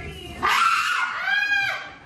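A person jumping out with a loud, bark-like yell to scare someone, followed by a high pitched scream that rises and falls and breaks off near the end.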